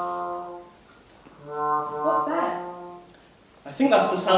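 A brass instrument plays two short phrases of low, steady held notes, each about a second and a half long. In the first phrase the pitch steps down. Louder voices and laughter break in near the end.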